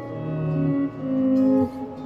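Clean electric guitar playing two sustained chords in turn, the second struck about a second in and left to ring. It is the end of a chord sequence arriving at its resolution on D-flat major over F.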